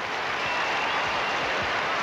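Large audience applauding steadily, a dense even wash of clapping.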